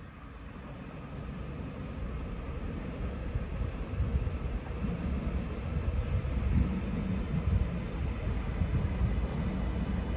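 TransPennine Express Class 397 electric multiple unit approaching the platform, its low rumble growing steadily louder, with a faint steady whine above it.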